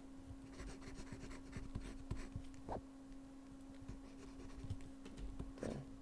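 Faint scratching strokes and light taps of a stylus working on a drawing tablet, over a steady low electrical hum.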